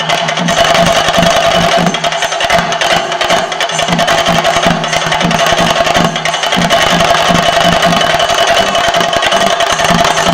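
Live theyyam percussion: chenda drums beaten in a fast, steady rhythm with clashing cymbals, loud and continuous.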